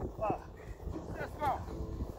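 Two short untranscribed vocal calls from the exercising group, one about a quarter second in and one near a second and a half, over a steady low rumble of wind on the microphone.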